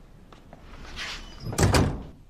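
A wooden front door swung shut: a swish, then a solid thud with a second quick knock of the latch about one and a half seconds in.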